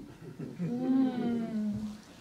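A person laughing softly, the laugh drawn out into one long held note.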